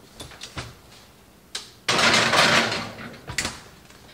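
A glass baking dish put into an electric range's oven: a click about a second and a half in, then a sudden loud noisy rush lasting just over a second as the door opens and the dish slides onto the rack, and a knock near the end as the door shuts.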